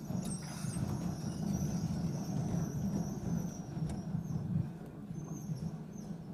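Low, uneven shuffling and handling noise of people moving and getting to their feet in a lecture room, with a faint high whine running through the first half.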